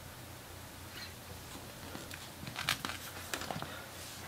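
Faint handling noise: a few soft clicks and taps in the second half over a low, steady hum.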